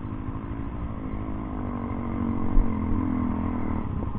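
Dirt bike engines running at idle, a steady low hum. In the second half one engine note grows louder and rises slightly as another dirt bike rides up the slope, with a brief thump about midway.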